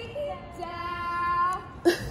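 A song with a female singer holding long, steady sung notes. A single sharp click sounds near the end.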